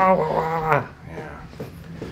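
A man's drawn-out moan of pain, held on one pitch and ending a little under a second in, as his neck is stretched by the chiropractor.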